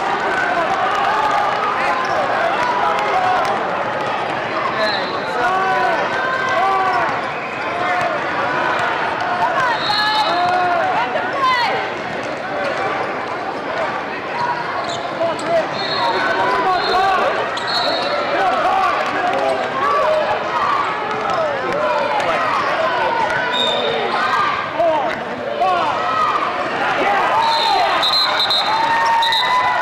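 A youth basketball game in a large hall: the ball bouncing on the court, many short sneaker squeaks, and indistinct voices, with short high referee whistle blasts several times.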